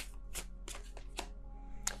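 A tarot deck being shuffled by hand: about half a dozen sharp card snaps and taps, spread out, with faint background music beneath.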